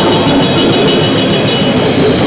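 Grindcore band playing live at full volume: a dense wall of distorted guitar and fast drumming, recorded on a camera's built-in microphone.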